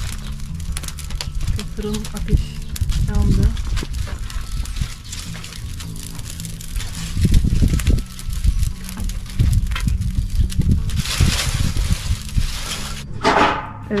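Wood fire crackling inside a clay bread oven, with many small sharp pops. A broad rushing hiss rises for about two seconds near the end.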